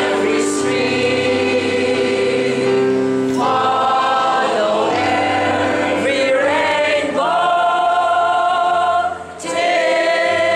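Mixed choir of men and women singing long held chords that change every few seconds, with a short break for breath near the end.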